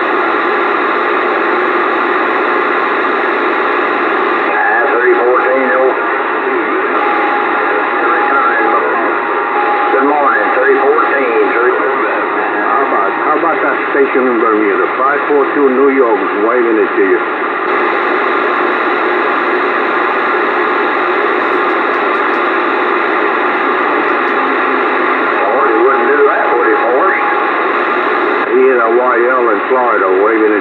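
Bearcat CB radio receiving on AM, its speaker giving a steady hiss of static with faint, garbled voices wavering through it that cannot be made out. A brief steady whistle sounds twice, once early and once near the end.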